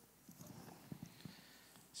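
Near silence: room tone with a few faint, soft taps or knocks in the first half.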